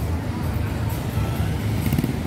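Street traffic ambience: a steady low rumble of passing cars and scooters, with faint voices in the background.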